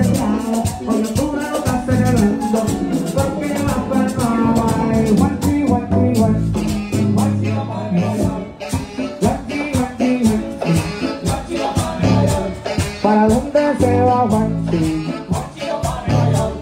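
Live Latin dance orchestra playing loudly, with a steady fast beat and a strong bass line.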